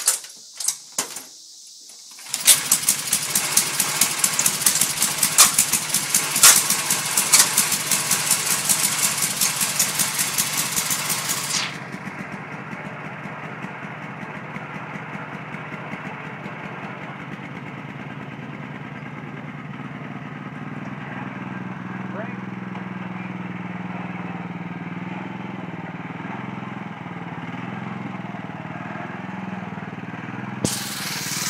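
Toro riding mower's vertical-shaft V70 pull-start engine being pull-started: a few short rope pulls, then it catches about two seconds in and runs loud and rattly. About twelve seconds in the harsh upper clatter cuts off abruptly and the engine carries on with a lower, steadier running note that wavers slightly in pitch near the end.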